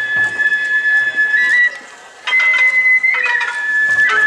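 Japanese festival hayashi music: a bamboo transverse flute plays long held high notes, stepping up in pitch and back down, over shamisen plucks and drum strikes. The flute breaks off briefly near the middle.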